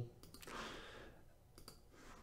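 A few faint clicks of a computer mouse: a couple near the start and a couple more near the end, with a soft breath between them.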